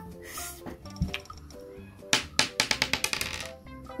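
A single thump about a second in, then a small die clattering across a hard tabletop in a quick run of clicks that dies away, with background music underneath.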